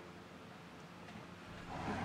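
Quiet room tone with a faint steady hum, then a soft handling noise building near the end as the plastic Ryobi 18V fogger is picked up and turned on the bench. The fogger itself is not running.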